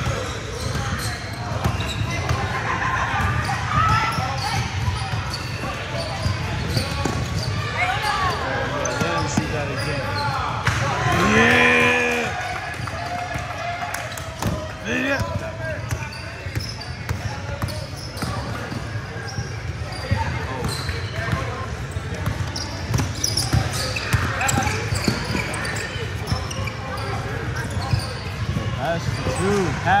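Basketball game in a large echoing gym: a ball being dribbled and bouncing on the hardwood court, with indistinct shouts and chatter from players and spectators. A loud shout stands out about eleven seconds in.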